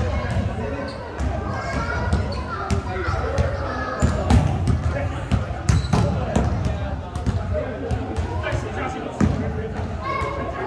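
A basketball bouncing on an indoor court floor, a scatter of sharp thuds echoing in a large sports hall, with players' voices talking throughout.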